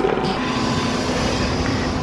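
Steady city traffic noise from the street outside, with a low steady hum that comes in about half a second in.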